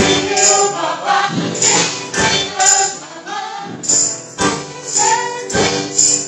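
A worship song performed live: several voices singing into microphones over a steady beat, with bright jingling percussion hits about twice a second.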